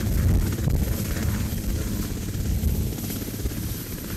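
Sikorsky VH-3D Sea King helicopter lifting off, its rotor chop and turbine noise in a heavy steady rumble that eases a little near the end as it climbs away.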